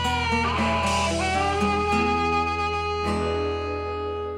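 Blues band playing the closing bars of a song: guitar lines over a steady held bass note, with a last chord struck about three seconds in and left ringing as the music begins to fade.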